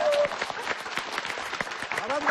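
Studio audience applauding, a dense steady patter of many hands clapping.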